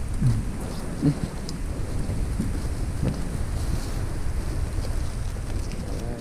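Steady low rumble of wind buffeting the microphone, with a few short spoken words in the first few seconds.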